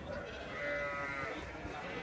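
A sheep bleats once, a single call lasting about a second, over a background of crowd chatter.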